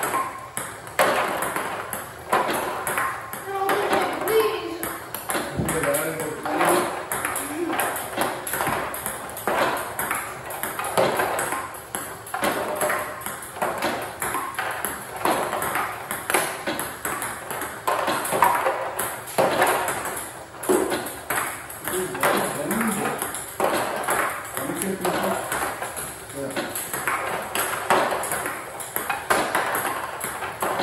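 Table tennis rally: a plastic ball clicks off the table and the rubber paddle again and again in a quick, steady rhythm as topspin returns are hit.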